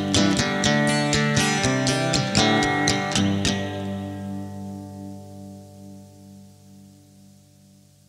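The closing bars of a song: guitar chords strummed briskly until about three and a half seconds in, then a final chord left to ring out and slowly fade away.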